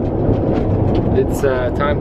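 Steady low rumble of an old Soviet passenger train running, heard inside its compartment. About a second and a half in, a man's voice starts over it.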